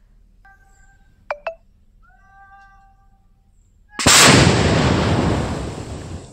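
A sudden loud blast, like an explosion, about four seconds in, dying away over about two seconds. Before it come two sharp cracks and a couple of short tonal calls.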